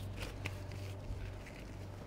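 Faint rustling and a few small clicks over a steady low hum.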